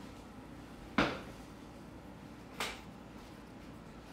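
Two clunks of kitchenware being set down, a frying pan going back onto the stovetop among them: a louder knock about a second in and a sharper, shorter one about a second and a half later.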